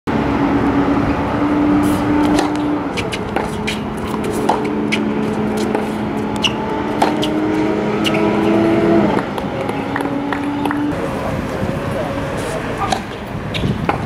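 Tennis ball being struck by racquets and bouncing on a hard court during a rally: a run of sharp pops. Underneath is a steady droning hum that shifts pitch a few times and stops about eleven seconds in.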